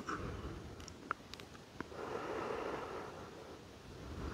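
Faint breathing: a soft, slow breath of air about halfway through, with a couple of small clicks before it.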